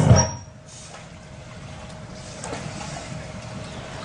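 Music cuts off just after the start, leaving a steady low background rumble with a faint steady hum running under it.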